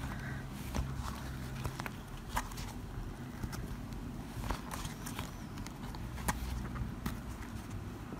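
Faint, irregular clicks and rustles of a crochet hook and thick jumbo cord being worked into stitches around a leather bag base.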